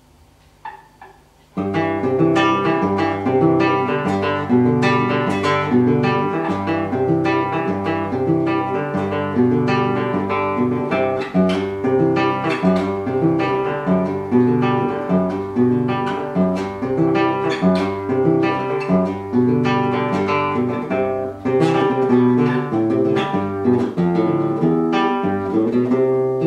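Solo classical guitar playing the instrumental introduction of a milonga: a few soft plucked notes, then from about a second and a half in, continuous plucked bass and chords.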